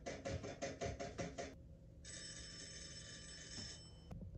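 Rapid knocking, about seven knocks a second, stops after a second and a half. After a short gap comes a steady, telephone-like bell ringing for about two seconds. Both are sound-effect recordings played through a TV speaker.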